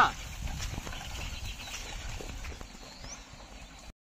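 A loaded bullock cart moving along a dirt track: faint irregular clops of the bullock's hooves and knocks from the cart, slowly growing fainter as it draws away. A man's shout ends right at the start.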